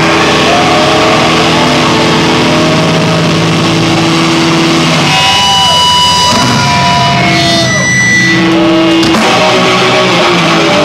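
Live rock band playing loud, with electric guitar and drums. About halfway through, the low notes thin out and a few steady high tones ring out for a few seconds before the full band comes back.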